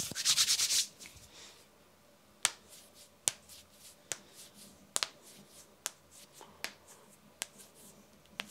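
Human knuckles cracking: after a short burst of the hands rubbing together, fingers interlocked and pushed give about seven sharp separate pops, one every second or less.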